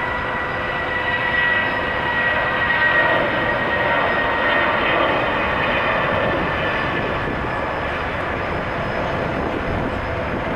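Airbus A320 airliner's twin turbofan engines running at takeoff power during the takeoff roll: a steady jet rumble with a high whine over it, a little louder a few seconds in.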